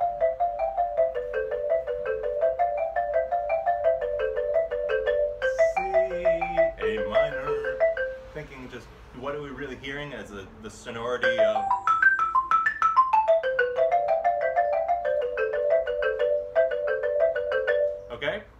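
Xylophone played with two mallets in double stops: quick, even strokes sounding two notes at once, moving up and down within a narrow range. A quick run climbs and falls back in the middle.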